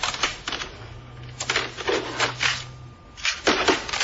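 Light clicks and clatter of plastic CD cases being handled and sorted through in a box, in quick irregular runs, with a faint low hum under the middle.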